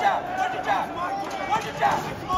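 Raised voices of people at ringside calling out in short shouts during a boxing bout.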